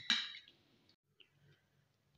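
The last syllable of a woman's narration fading out, then near silence with a single faint click about a second in.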